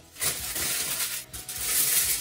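Aluminium kitchen foil crinkling and rustling as it is handled and a sheet is pulled from the roll. A dense, crackly rustle starts about a quarter of a second in and goes on with a short lull in the middle.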